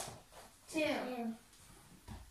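Speech: voices counting a repetition aloud, the word "two" said twice.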